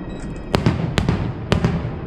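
Fireworks shells bursting: four or five sharp bangs, roughly half a second apart, in the second half of the first second and the second half of the clip, over a steady low background rumble.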